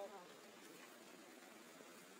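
Near silence with a faint, steady insect buzz. A brief pitched sound right at the start.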